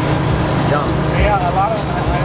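A steady low rumble runs under the scene. About a second in, a man's voice says "yum" through a mouthful.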